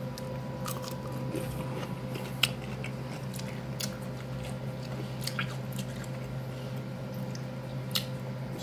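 Biting into a kosher dill pickle and chewing it, with scattered crisp crunches, the sharpest about two and a half seconds in, over a steady low hum.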